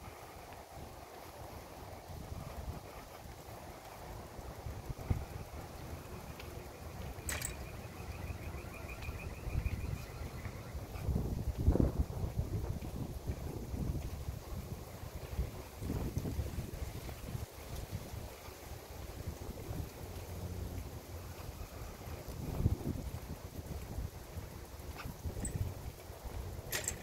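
Wind buffeting the microphone outdoors: a low, uneven rumble with occasional swells. A sharp click comes about seven seconds in, followed by a brief high pulsing trill.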